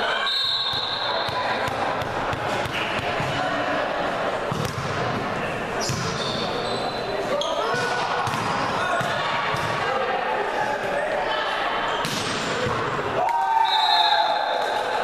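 Indoor volleyball rally: repeated sharp hits of the ball off players' hands and arms, ringing in a large gym hall, with players shouting calls over them. The voices grow louder near the end.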